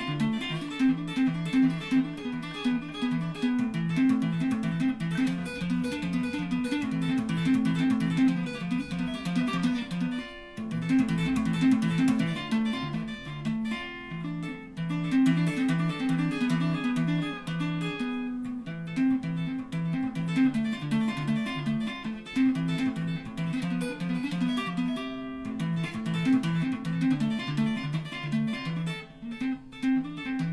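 Solo electric guitar played fast, busy picked single notes mostly in the low register, with a few short breaks.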